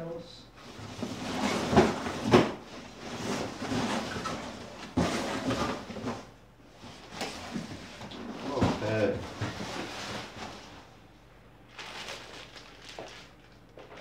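Cardboard shipping box and plastic packaging being handled and moved: a string of rustling, scraping and knocking noises, growing quieter over the last few seconds.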